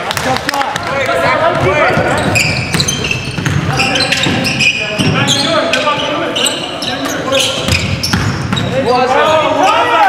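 Basketball being played on a gym's hardwood floor: the ball bouncing and sneakers squeaking in quick, irregular bursts, with players' voices calling out.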